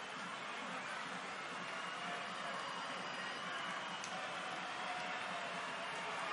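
Steady crowd noise from a football stadium, heard through a TV broadcast, with faint voices mixed into it.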